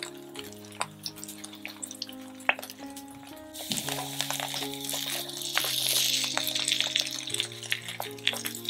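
Grated-potato fritters frying in olive oil in a nonstick pan: scattered crackles and pops, the sizzle swelling to a loud hiss about halfway in and easing near the end. Soft background music with held notes plays underneath.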